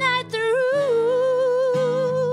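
A woman's voice holding a long wordless note with gentle vibrato, after a short break for breath near the start, over a sustained guitar accompaniment.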